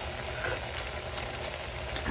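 Pot of soup at a hard rolling boil: steady bubbling and hissing over a low rumble, with a couple of faint ticks.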